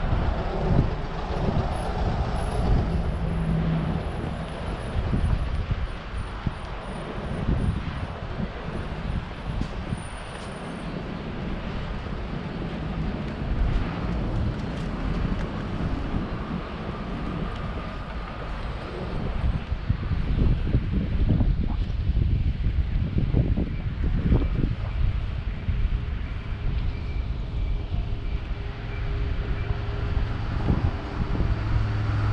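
Road traffic on a city street: cars and a bus running past in a steady low rumble, growing louder in the last third.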